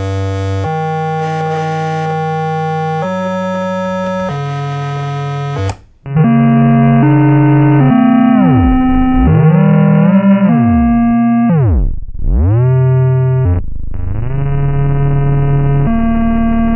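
Soviet toy synthesizer playing held, organ-like notes that step to a new pitch every second or so. About six seconds in the sound cuts out briefly and returns through an effects pedal, with the pitch swooping down and back up in deep glides as the pedal's knobs are turned, then settling on steady notes near the end.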